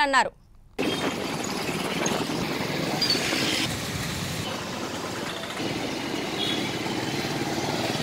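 Town street traffic, starting just under a second in after a short gap: a steady wash of motorcycle and small-engine noise as vehicles pass, with faint voices in the background.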